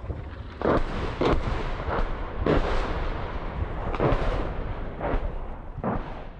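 A series of loud bangs from rocket fire, about seven blasts over six seconds, each echoing, over a continuous low rumble.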